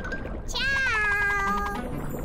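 A single drawn-out, high-pitched cartoon sound that slides down in pitch and then holds steady for about a second, over light background music.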